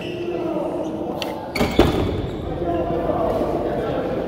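Indistinct background chatter echoing in a large sports hall, with a single sharp thump a little under two seconds in.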